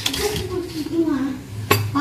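Metal spoon clinking and scraping against a mixing bowl while stirring pancake batter, with one sharp clink near the end.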